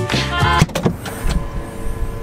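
Background music cuts off about half a second in. Then a car's rear hatch swings open with a steady mechanical whine.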